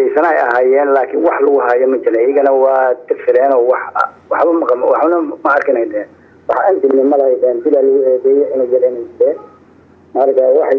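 Speech only: one voice talking in Somali, in short phrases with brief pauses. It sounds thin and narrow, like a telephone or radio line.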